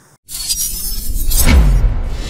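Logo-intro sting of music and sound effects: it starts suddenly after a brief dropout, swells to its loudest hit about one and a half seconds in with a falling low tone, then settles into sustained music.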